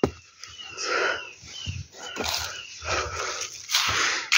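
Footsteps crunching and rustling through dry leaf litter in uneven, repeated swells.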